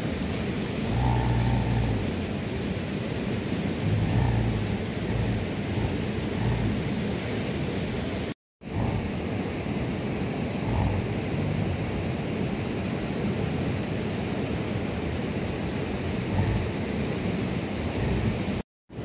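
Steady rushing of a mountain stream close by, with occasional low rumbles; the sound drops out for a moment about halfway through.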